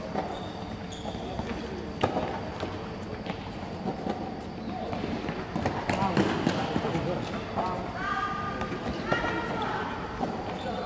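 Tennis balls struck by rackets and bouncing on an indoor hard court, with a sharp hit about two seconds in. High children's voices call out near the end.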